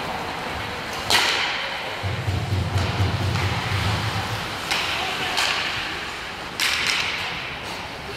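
Ice hockey play: about four sharp cracks of stick and puck striking, echoing in the rink. A low rumble runs beneath them for a couple of seconds near the middle.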